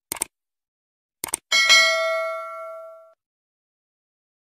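Subscribe-button animation sound effect: two quick mouse clicks, two more a second later, then a notification bell ding that rings with several pitches and fades out over about a second and a half.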